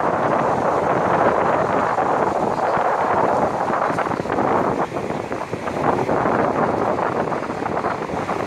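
Steady ocean surf washing onto the beach, mixed with wind buffeting the microphone.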